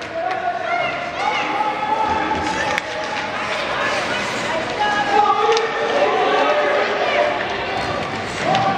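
Spectators in an ice rink shouting and calling out over one another, several voices at once with no clear words, with a few sharp clicks of sticks and puck on the ice.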